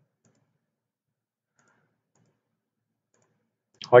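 A few faint computer mouse clicks in a near-silent room as a menu is opened and a tool dialog is launched.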